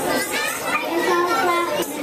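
Children's voices chattering, several high-pitched voices overlapping.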